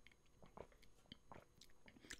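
Near silence, broken only by a few faint, short clicks.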